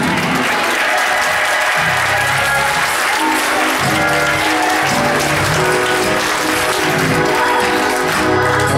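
Congregation applauding in a church as the band's instruments play on, with a walking low bass line and sustained chords under the clapping.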